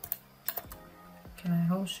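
Several separate clicks from a computer keyboard and mouse, a fraction of a second apart, as keys like Shift are pressed and points are clicked while drawing.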